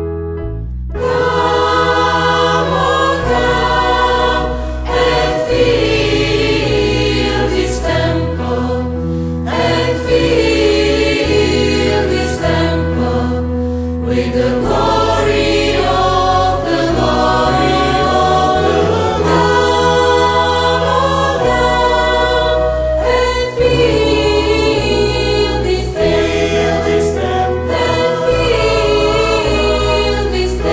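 A church choir singing a sacred song over sustained low accompaniment, the full choir coming in about a second in.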